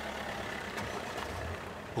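A Fiat Fiorino van's engine running as the van pulls away, a steady low hum.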